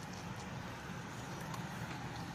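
Steady low hum inside a car's cabin, with the engine idling. A few faint mouth clicks from chewing can be heard.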